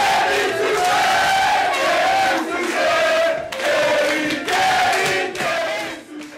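A group of men chanting loudly together in a football-club chant, led by one voice shouting through a microphone, in short repeated phrases of about a second each.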